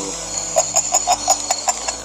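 An animal calling: a quick run of about eight short, evenly spaced chirping notes, about six a second, starting about half a second in.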